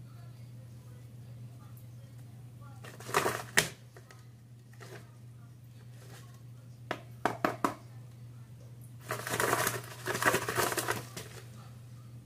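Cinnamon shaken from a plastic shaker bottle over sliced apples in a plastic container, with the container handled: a short rattle about three seconds in, a few sharp clicks around seven seconds, and a longer rattle from about nine to eleven seconds. A steady low hum sits underneath throughout.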